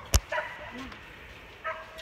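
A single sharp knock just after the start, the loudest sound here, as the phone is moved and handled. It is followed by a few brief, high-pitched cries that bend in pitch, around a second in and again near the end.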